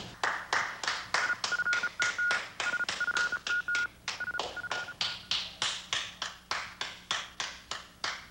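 A single pair of hands clapping slowly and steadily, about three claps a second. A faint high beeping tone comes in short dashes from about a second in to about five seconds.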